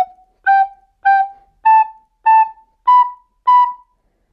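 Plastic soprano recorder playing short, tongued notes in pairs stepping up the scale, about two notes a second: F-sharp, G, G, A, A, B, B.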